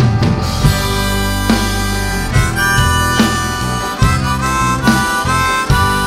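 Live rock band playing an instrumental break on drums, bass and electric guitar. A harmonica comes in about two seconds in, playing held notes with bends up and down.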